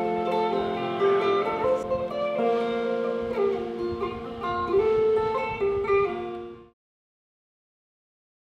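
A sape, the carved Bornean lute, played with plucked melody notes over a steady low drone. The playing fades out quickly about six and a half seconds in.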